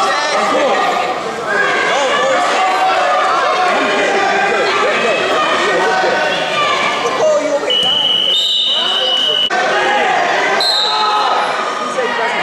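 Spectators' voices and chatter in a gymnasium during a wrestling bout. About two-thirds of the way through, a steady high-pitched signal tone sounds for about two seconds.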